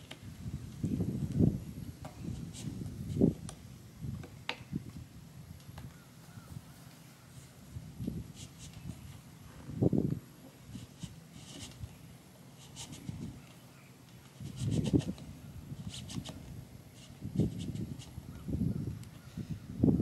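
Red PEX tubing being pushed through drilled holes in a PVC pipe: irregular plastic rubbing, scraping and bumping every second or two.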